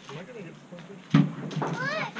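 A single sharp knock about a second in, as a disassembled swing set frame is loaded into a pickup truck bed, followed by a child's high-pitched rising voice.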